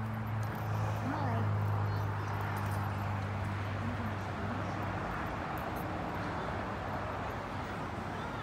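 Background voices of people talking at a distance, over a steady low hum that fades out about five seconds in.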